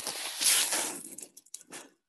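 Air hissing into a vacuum chamber through an opened valve, swelling about half a second in and then fading away in flickers as the chamber fills back up.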